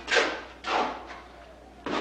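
Three sudden knocks and thuds: the loudest just after the start, another a little over half a second in, and a sharp one near the end, each dying away quickly over a low steady hum.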